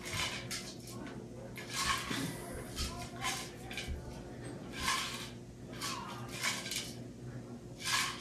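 Short breaths and movement sounds of a man doing dumbbell bicep curls, coming roughly once a second in time with the reps, over a faint steady hum.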